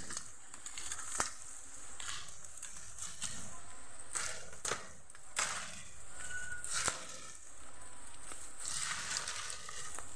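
Bamboo leaves and thin dry stems rustling and cracking as people push through a dense bamboo thicket, with several sharp snaps scattered through.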